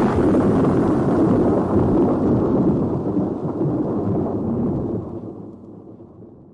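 Thunder sound effect: a long rolling rumble following a thunderclap, which dies away over the last second or so.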